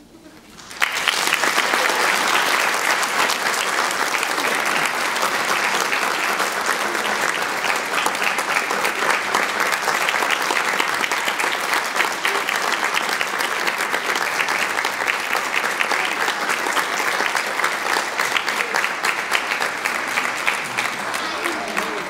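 Audience applauding in a theatre, starting about a second in and keeping up a steady, dense clapping that eases off slightly near the end.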